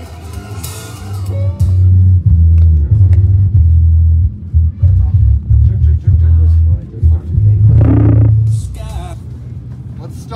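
Music with a heavy bass line playing over outdoor PA speakers: loud, deep bass notes in an uneven pulsing pattern from about a second and a half in until near the end, with voices faintly underneath.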